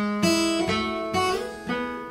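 Steel-string acoustic guitar fingerpicked softly: single notes plucked one after another, about two a second, each left ringing. It is a short melodic fill picked with the index finger on the third string and the ring finger on the first.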